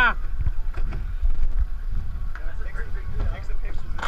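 A laugh ending right at the start, then a steady low rumble of wind buffeting the microphone aboard a small boat, with a few light knocks and faint voices.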